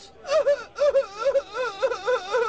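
A woman wailing in distress, her voice quavering up and down in quick sobbing pulses.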